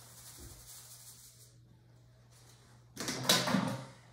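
Sugar sliding off a paper plate into a plastic mixing bowl, a faint hiss that fades out. About three seconds in comes a short, louder knock and scrape of a container being picked up from the counter.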